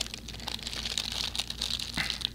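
Plastic wrapper of a stroopwafel being handled and opened, crinkling with many small crackles.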